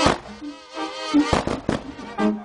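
A brass band playing held notes, with sharp loud bangs at the start and a quick run of three bangs about two-thirds of the way in.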